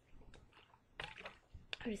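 Faint clicks and rustles of a plastic drink bottle being handled, with a soft thump about one and a half seconds in as it is set down on the desk.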